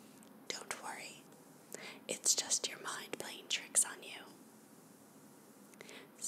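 A woman whispering, unvoiced and breathy, for about four seconds, then a short pause.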